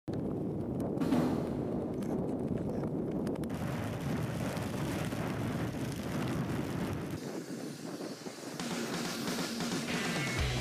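Strong wind gusting across the microphone: a steady low rumble that thins out about seven seconds in.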